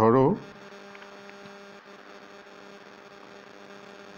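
A faint, steady hum with a few constant tones, after a single spoken word at the very start.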